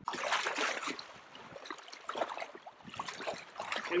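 Choppy, wind-driven lake waves lapping and splashing at the shoreline, an irregular run of small splashes, loudest in the first second.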